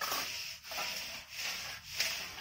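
Metal straight edge scraping back and forth across wet cement to level it: a gritty rasp with each stroke, the strokes coming about every two-thirds of a second with short breaks between them.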